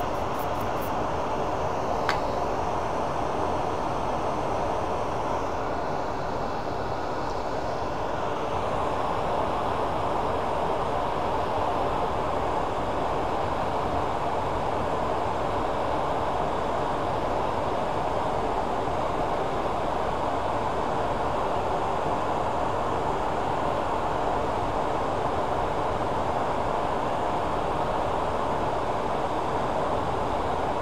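Workshop dust collector running steadily, a constant rush of air and motor noise. A brief click about two seconds in.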